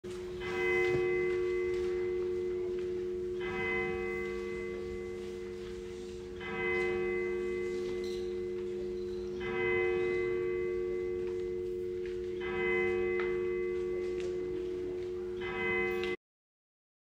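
A church bell tolling one note, struck six times about every three seconds, each stroke ringing on into the next.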